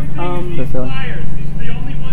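People talking over a steady low hum and rumble.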